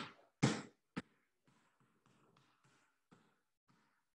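A basketball dribbled on a wooden floor: three loud bounces in the first second, then fainter bounces about three a second.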